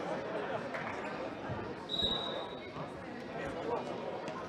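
Futsal ball kicked and bouncing on a sports-hall floor, amid players' shouts and chatter. A short, steady referee's whistle sounds about two seconds in as play restarts.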